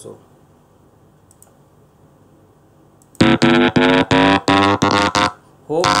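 Synthesized chirp test signal from a Simulink model played through the computer's audio output: a loud electronic tone with several overtones that starts about three seconds in and keeps breaking up with short dropouts, then returns steadily near the end.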